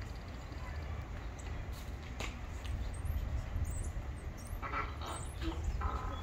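Animatronic dinosaur's recorded growl from its speaker: short rough bursts in the second half, over a steady low rumble with thin high bird chirps.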